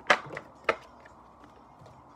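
A tarot card deck being cut and shuffled by hand: three sharp slaps of the cards in the first second, the first the loudest.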